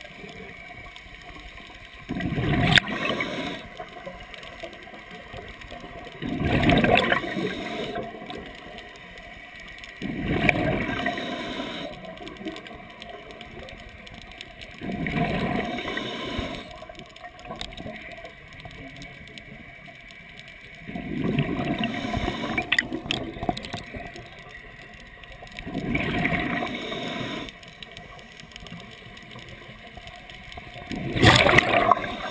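Scuba regulator exhaust bubbles rushing and gurgling, heard underwater. Six bursts of exhaled breath come about every four to five seconds, with quieter underwater hiss between them.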